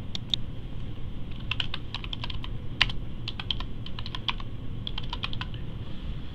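Typing on a computer keyboard: a quick run of key clicks in several short, irregular bursts.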